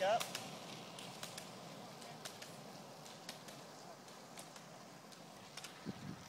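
Roller-ski pole tips striking asphalt: sharp clicks, a few per second and often in pairs, growing fainter as the skiers move off.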